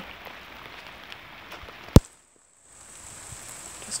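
Steady rain falling on a garden, a constant even hiss. About halfway through comes one sharp click, followed by a brief dropout of about half a second before the rain sound returns.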